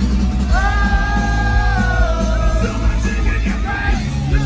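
Live rock band playing loud over a PA, heard from within the crowd, with a singing voice that holds one long note and then breaks into shorter sung phrases.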